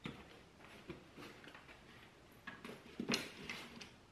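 Camera accessories being handled and rummaged in a padded camera bag: a few irregular small clicks and knocks of hard gear, the loudest about three seconds in.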